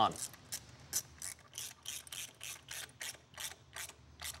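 Hand socket ratchet clicking in short strokes, about three clicks a second, as bolts are run in to fasten the water pump to the engine block.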